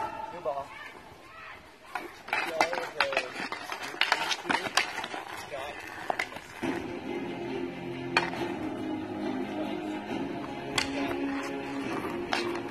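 Street-hockey sticks clacking against the ball and the asphalt, as scattered sharp knocks, with shouts and music playing under them.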